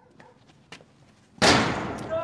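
A few faint clicks, then one loud, sharp bang about one and a half seconds in that rings out briefly: a sound effect from the film's prison scene.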